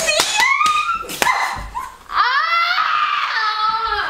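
A young woman squealing and shrieking as her back is slapped in a playful penalty game, with a few sharp slaps in the first second or so. From about two seconds in, one long high-pitched shriek.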